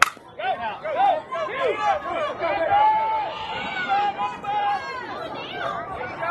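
A softball bat hits the ball with a single sharp crack, followed by spectators shouting and cheering in high voices.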